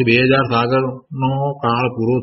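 Only speech: a man talking in a lecture, with a brief pause about a second in.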